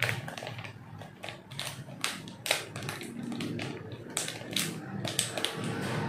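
Clear plastic vacuum-sealer bag crinkling and crackling as it is handled, a string of sharp, irregular crackles.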